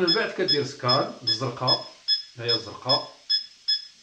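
Satellite receiver's signal-meter beep: a short high beep repeating evenly, about two and a half times a second. It sounds because the tuner is locked onto a transponder with good signal, and the beep grows stronger as the signal does.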